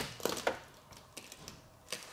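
A few faint, scattered clicks and crackles as the Land Rover's rear door is slowly eased open by its handle, the freshly hardened fiberglass sandwiched against the door starting to come away.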